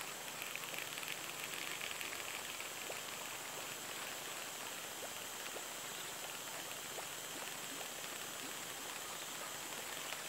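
Faint, steady outdoor ambience at the waterside: an even hiss with a few soft ticks and no distinct event.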